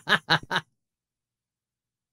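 A man laughing hard in quick, evenly spaced bursts, about six a second, that stop about half a second in. Dead silence follows.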